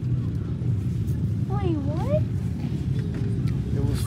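A steady low rumble runs throughout, with one short wavering voice sound about halfway through.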